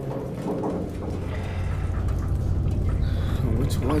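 A deep, steady rumble inside a submarine, with a short spoken question near the end.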